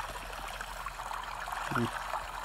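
Steady, even rushing hiss of a white-noise recording that sounds like running water, playing in the background.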